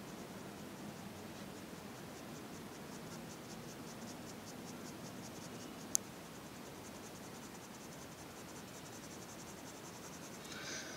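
Colour pencil shading on paper: faint, rhythmic back-and-forth scratching strokes. A single sharp click about six seconds in.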